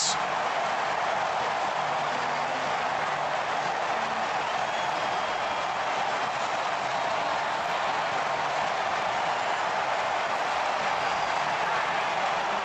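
Ballpark crowd cheering steadily, celebrating a game-winning hit.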